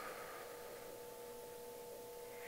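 Quiet room tone in a large hall, with a faint steady hum of two pitches.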